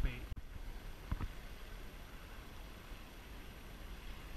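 Faint steady rumble of the flowing river and wind on the action-camera microphone, with a single short click about a second in.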